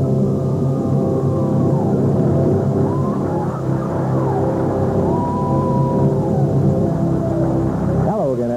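Opening theme music of a TV wrestling show, long held notes at a steady loud level, with a few sliding yells and whistles like those of a cheering crowd mixed in.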